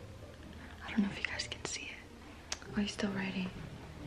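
A woman whispering in two short stretches, with a small click between them.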